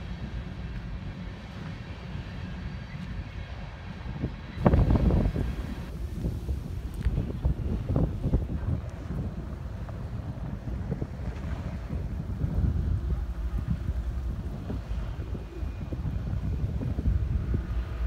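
Wind buffeting the microphone: a steady low rumble that turns louder and gustier about four and a half seconds in.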